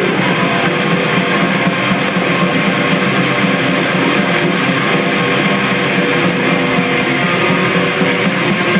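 Live groove metal band playing: distorted electric guitars, bass guitar and drum kit, loud and steady throughout.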